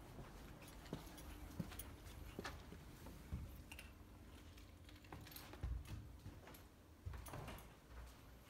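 Quiet room with scattered faint clicks and a few soft low thumps from footsteps and the handling of a hand-held phone camera being walked through the rooms. A faint steady hum stops about six seconds in.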